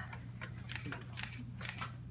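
Several quiet camera shutter clicks, roughly half a second apart, over a steady low room hum.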